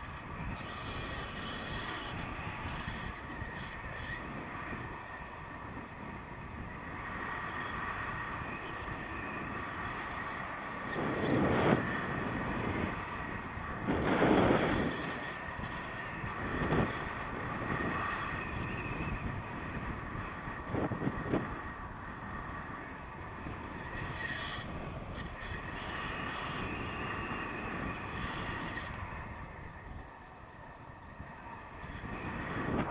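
Wind rushing over an action camera's microphone in flight under a tandem paraglider, a steady hiss with louder gusts of buffeting around the middle, the strongest two a few seconds apart.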